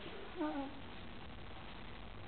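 A single short vocal call, its pitch falling, about half a second in, over a steady even hiss.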